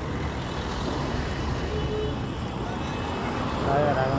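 Steady low rumble of a car moving slowly in traffic, engine and road noise heard from inside the cabin, with other vehicles passing close by.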